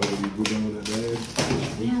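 Voices talking at a meal table, with a few sharp clicks and knocks from tableware and takeout containers being handled.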